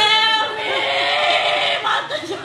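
A woman wailing loudly in grief, a high cry held for about half a second and then a broken, sobbing wail, with other women's crying voices mixed in.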